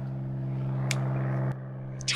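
A steady low motor hum that grows slightly louder, then drops back about three-quarters of the way through, with a faint click near the middle.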